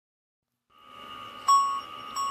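Chime tones fade in, then a bright bell-like note is struck about one and a half seconds in and rings on. This is the opening of a Christmas backing track.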